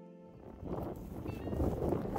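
A held music chord dies away, then wind buffets the microphone with a low rumble that grows louder.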